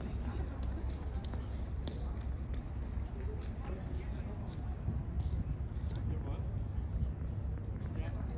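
A steady low rumble with indistinct voices and scattered short clicks.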